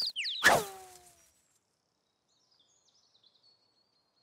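Cartoon bird sound effects: a few quick high chirps, then about half a second in a sudden loud sound sliding down in pitch as the startled birds fly off, fading within a second. Faint high twittering follows later.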